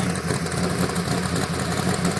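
Trophy truck engine idling steadily, a low, evenly pulsing note.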